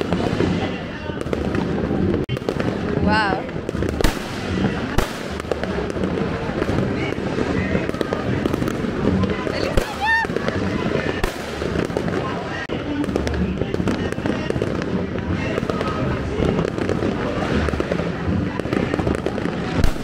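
Dense, continuous barrage of fireworks and firecrackers going off all around, with many sharp bangs overlapping. A couple of rising whistles come through, one about three seconds in and another about ten seconds in.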